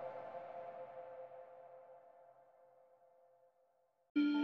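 Background music: a sustained electronic chord left ringing after a hit, fading slowly away to silence shortly before the end.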